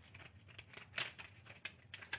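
Faint crinkling of thin plastic film gel and light clicks from a rolled perforated-aluminium sleeve as the gel is slid inside it. The sharpest click comes about a second in.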